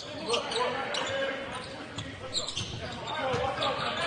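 Basketball game sound in a large hall: a ball being dribbled on the hardwood court, with faint voices from players and crowd echoing around it.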